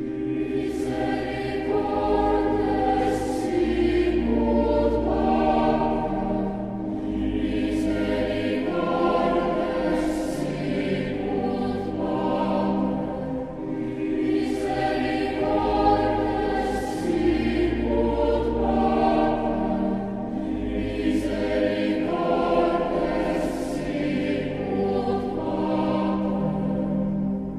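A choir singing slow, sustained chords over low bass notes, beginning abruptly at the start.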